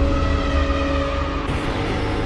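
Cinematic logo-intro sound effect: a low rumble under a held droning tone, with a fresh swell of hiss about one and a half seconds in.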